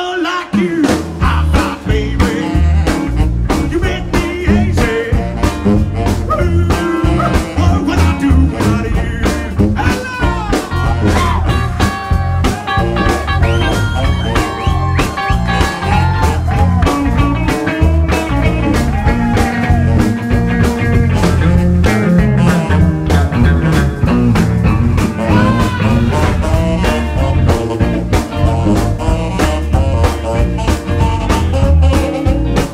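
Live rockabilly band playing with a steady drum-kit beat, electric bass, electric guitar and saxophone, with a male singer on vocals.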